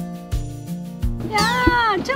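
Background music with a steady bass beat. About a second and a half in, a loud high cry that glides up and down enters over it.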